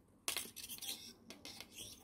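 Thin 0.4 mm wire being wound by hand around a 1 mm wire frame: a run of faint small metallic clicks and scrapes.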